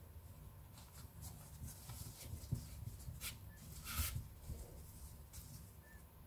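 Faint rustling and scratching of T-shirt yarn and a needle being drawn through tight crocheted stitches, in short irregular strokes, with a louder scrape about four seconds in.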